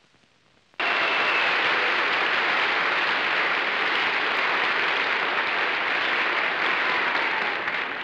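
Studio audience applauding, starting suddenly about a second in, holding steady, and tapering off near the end.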